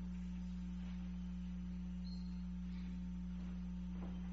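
A steady, low electrical hum over faint room hiss.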